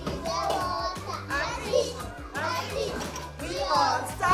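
Young children's voices calling out and chattering over background music with a bass line.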